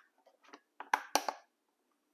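Plastic clicks and knocks from a corded desk telephone's housing being handled and turned over in the hands: a few faint clicks, then three sharper knocks about a second in.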